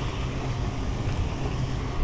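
Steady low outdoor rumble, wind-like, with an even hiss above it and no distinct splash or reel clicks standing out.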